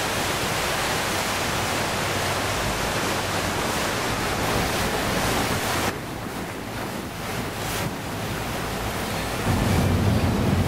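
Steady rush of wind over the microphone and water noise on the open deck of a moving river tour boat. About six seconds in, the rush turns quieter and duller.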